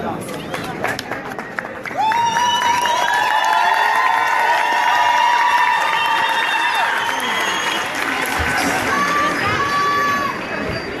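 Crowd cheering: many high-pitched voices break out together about two seconds in and hold long, steady notes for several seconds, with a few more held calls near the end.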